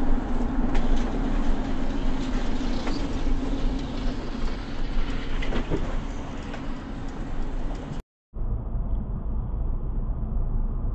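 Steady road and engine noise of a moving vehicle, as picked up by a dash camera inside a car, with a low hum and a few faint ticks. About eight seconds in it drops out briefly, then resumes duller.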